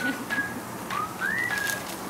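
A bird calling in short, clear whistled notes at a few set pitches, one of them rising, about a second in.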